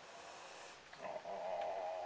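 A low, wavering vocal hum begins about a second in and holds for about a second and a half.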